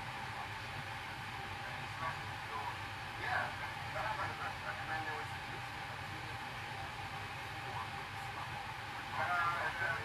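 Steady low hum and hiss of background room noise, with faint, indistinct speech about three seconds in and again near the end.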